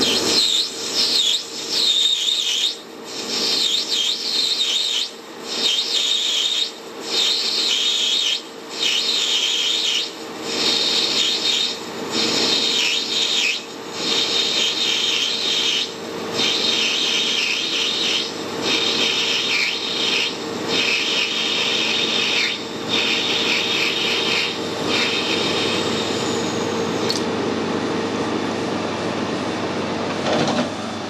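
Metal lathe parting off a brass workpiece: the tool is fed in repeatedly, each cut giving about a second of high-pitched scratchy cutting squeal with short breaks between, over the lathe's steady running hum. The cutting ends in the last few seconds as the part comes free, while the lathe keeps running.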